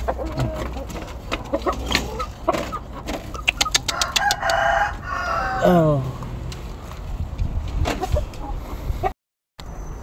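Chickens being handled in a bamboo coop: a quick run of knocks and scuffling, then one pitched chicken call lasting about a second, about four seconds in.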